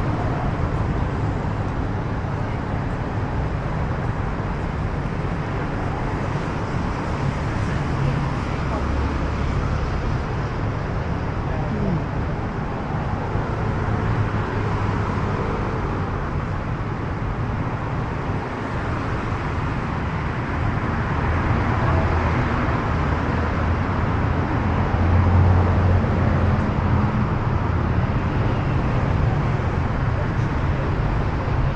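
City street ambience beside a road: steady traffic noise from passing vehicles, with people's voices in the background.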